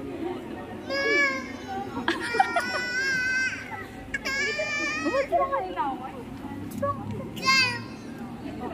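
A toddler crying hard in four high wails, the longest starting about two seconds in and lasting over a second.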